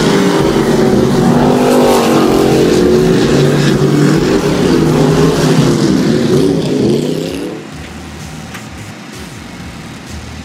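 Several dirt-track race cars' engines running hard through a turn, their engine notes overlapping and rising and falling as they rev. At about seven and a half seconds the engine noise drops away sharply, leaving a quieter background.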